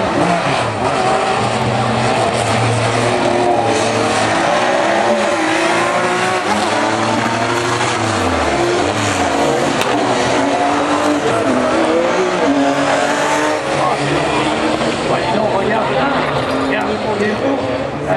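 Several rallycross cars racing, their engines revving up and down through gear changes. One engine note drops steeply about eight seconds in.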